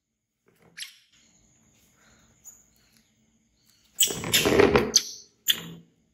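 Baby macaque screaming: a loud cry of about a second, then a shorter one just after.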